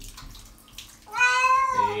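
Wet domestic shorthair cat giving one long, loud meow about a second in, distressed at being bathed.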